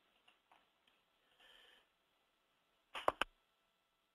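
A quick cluster of about three sharp clicks about three seconds in, the sound of a computer mouse being clicked to change slides, against a faint hiss.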